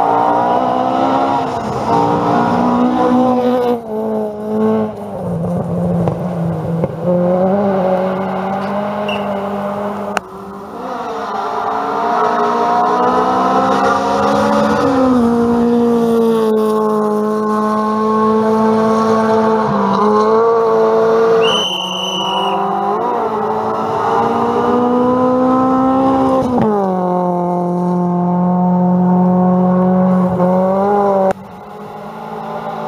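Rally cars at full throttle on a gravel stage, among them a Honda Civic hatchback, engines revving hard with the pitch climbing and dropping through gear changes as they pass. There is a brief high squeal about two-thirds of the way through.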